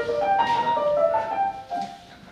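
Grand piano playing a quick run of single notes that breaks off about a second and a half in.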